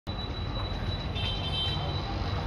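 Steady low rumble with a constant thin high-pitched whine. A few brief higher tones come in about halfway through.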